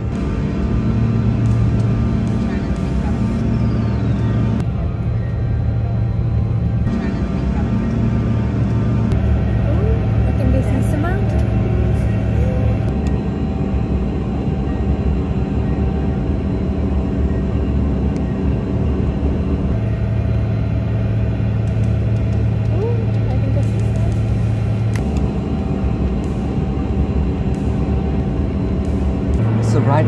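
Steady low drone of a small turboprop airliner's engines heard inside the cabin during the climb, with background music over it.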